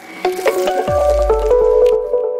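Logo-reveal sound effect: a crackling swish under a run of electronic tones that step upward, then a falling bass drop about a second in that settles into a deep low hum and a held tone.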